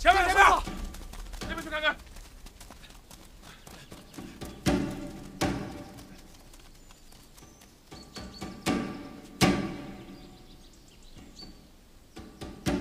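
A short wavering vocal cry in the first second and another brief one soon after, then pairs of dull thuds, two beats about 0.7 s apart, recurring every four seconds or so. Faint high chirps come in the second half.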